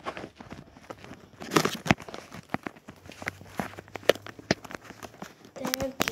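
Irregular knocks, clicks and rustling from a handheld phone being carried and moved about. A faint steady hum runs through the middle.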